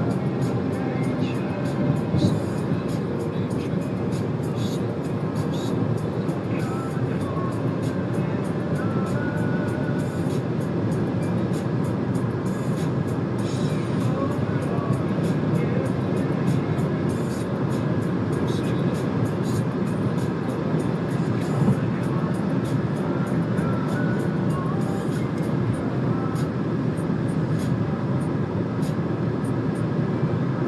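Steady road and wind noise of a moving car, an even low rumble that does not change.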